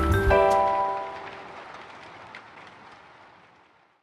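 Acoustic guitar strumming a final chord about a quarter second in. The chord rings and slowly fades away to silence, ending the song.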